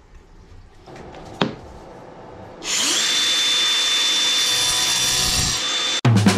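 A handheld power tool starts up a little before halfway and runs at a steady high speed with a constant high whine, cutting off abruptly just before the end. A single sharp knock comes earlier, about a second and a half in.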